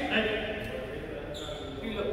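People talking in a large, echoing indoor badminton hall, with a couple of short knocks from play.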